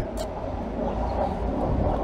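Steady low rumble of town street background noise, with a brief click about a fifth of a second in.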